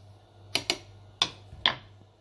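A wooden spoon knocking against the side of a drinking glass while juice is stirred: four sharp ticks, spread irregularly across two seconds.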